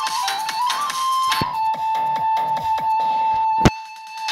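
Electronic arranger-keyboard music: a flute-like Dizi lead voice plays a stepping melody over a dance drum beat, then holds one long note from about a second and a half in. A sharp hit comes near the end, and the beat drops out briefly after it.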